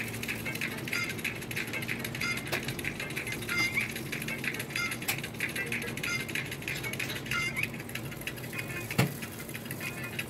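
Electric oven with a rotisserie chicken cooking: a steady hum under a busy crackle of sizzling fat, with a few sharp pops, the loudest about a second before the end.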